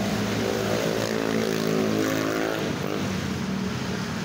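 A motor engine running with a steady, even drone, fading out about three seconds in.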